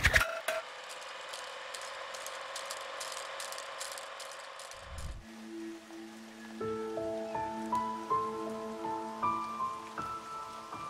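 Film-reel sound effect: a mechanical clicking rattle that stops about five seconds in, followed by a low thud. Soft music with sustained notes then begins.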